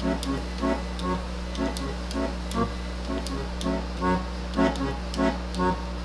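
Roland V-Accordion (digital accordion) playing a forró accompaniment: left-hand bass buttons and chords on an even beat of about two notes a second, with the right hand on the keyboard.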